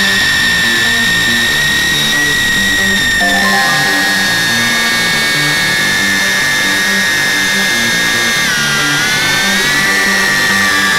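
High-pitched whine of a tiny whoop micro quadcopter's motors in flight, heard from the onboard camera. The whine wavers in pitch, dips and climbs again near the end, and has a steadier stepped tone underneath.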